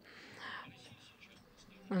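A pause in speech, holding only a faint, brief whisper-like sound about half a second in; speech starts again at the very end.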